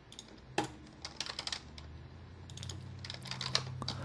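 Typing on a computer keyboard: short, irregular bursts of keystroke clicks.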